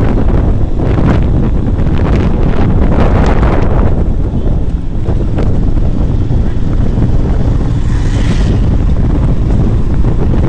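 Wind buffeting the microphone on a moving motorcycle, over a loud low rumble from the bike and road. About eight seconds in, a brief higher-pitched sound cuts through.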